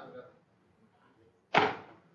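A few trailing words of speech, then about one and a half seconds in a single sudden, loud burst of noise at the microphone that dies away within half a second.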